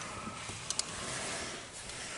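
A hinged window being pushed and handled: faint rustling with two small, quick clicks a little under a second in.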